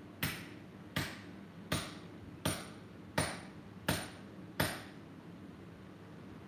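A hand hammer forging red-hot steel on an anvil: seven steady blows, about one every 0.7 seconds, each with a short metallic ring. The hammering stops about five seconds in.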